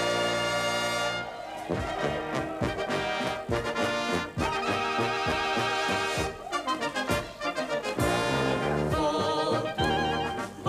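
Czech brass band (dechovka) playing an instrumental passage: trumpets and trombones carry the tune over a steady beat of bass notes.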